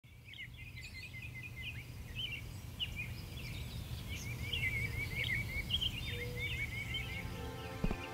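Small birds chirping and twittering in quick, repeated calls over a steady low outdoor rumble. Music begins to swell in near the end.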